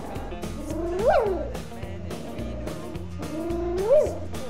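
Young schnauzer puppy crying twice, each cry a whine that rises steeply in pitch and then drops, the first about a second in and the second near the end, over background music.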